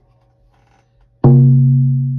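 A shamanic frame drum struck once about a second in, its deep low tone ringing on and slowly dying away.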